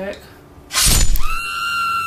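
A sudden crash, like something smashing, followed by a long high-pitched scream held on one note.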